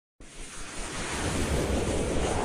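A rushing noise swell, a whoosh sound effect, that starts suddenly and builds steadily louder as an animated logo intro begins.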